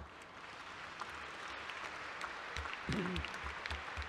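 Audience applauding, fairly faint and steady, a hall full of people clapping.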